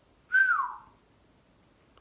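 A man whistles one short note, about half a second long, that slides down in pitch: a falling whistle of dismay at bad news.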